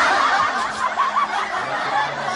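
Several people laughing and chuckling together in a dense, continuous burst.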